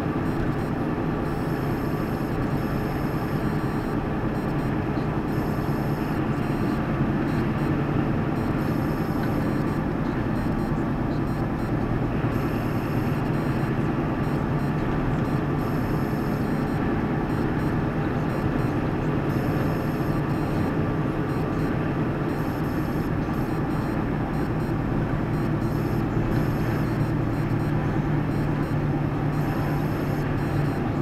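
Steady engine drone and tyre and road noise inside a moving vehicle's cab at motorway cruising speed, unchanging throughout.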